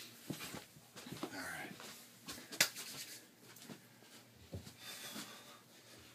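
Scattered soft knocks and rustles as a phone camera is handled and set in place, with one sharper click about two and a half seconds in, then bare feet moving on carpeted stairs.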